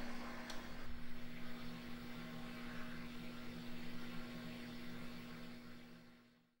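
Electric oven running with a steady hum and fan noise, with a light click about half a second in as its control is set. The hum fades near the end.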